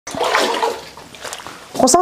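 Water splashing and sloshing, loudest in the first half second and dying down after about a second.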